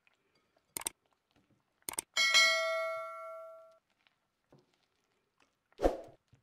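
Subscribe-button animation sound effect: two short clicks about a second apart, then a bell ding that rings out and fades over about a second and a half. A dull thump near the end.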